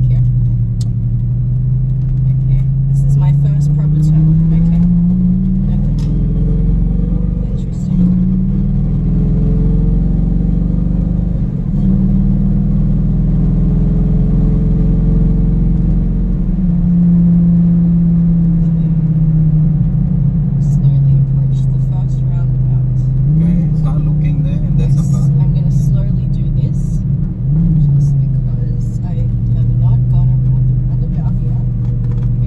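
Lamborghini engine heard from inside the cabin as the car is driven. Its pitch climbs steadily under acceleration over the first few seconds, then it runs at a steady note with a few brief dips and recoveries in pitch later on.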